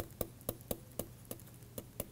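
Stylus tip tapping on a pen tablet during handwriting: a string of light, sharp clicks, about four a second, unevenly spaced.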